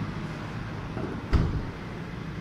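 A single dull thump about a second and a half in: the 2017 Honda Civic's bonnet latch being released. It sounds over a steady low hum.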